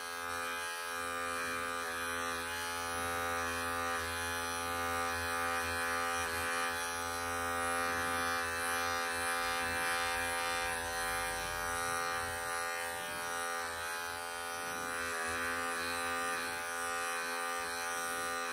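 Wahl Bravura Lithium cordless pet clipper running steadily as it shaves matted, pelted fur from a long-haired cat's belly.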